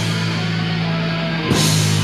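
Live black/death metal band playing: distorted electric guitar and bass guitar holding a low chord over a drum kit, with a cymbal crash about one and a half seconds in.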